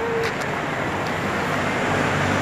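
Steady vehicle and traffic noise, with a low engine hum coming in over the last half second.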